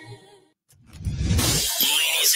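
Sung music fades out. After a brief silence, a sudden crash-like sound effect with a deep rumble starts about a second in, followed by a dense high hiss.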